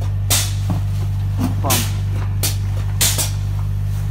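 Graco Reactor H-40 hydraulic spray-foam proportioner running: a steady low hum with short, sharp clicks at irregular intervals.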